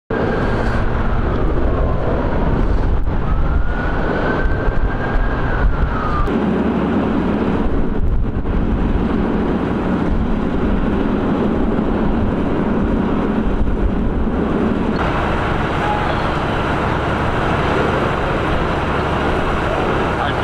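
Steady rumble of idling emergency vehicles and road noise, with a siren's wail faintly rising and falling in the first six seconds. The background changes abruptly about six and fifteen seconds in.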